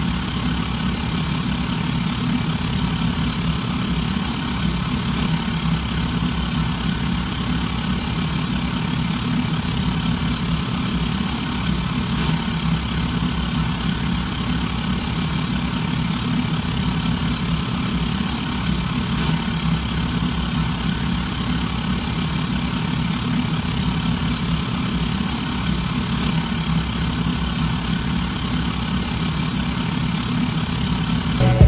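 Steady idling engine sound: an even low rumble with hiss above it, unchanging in level.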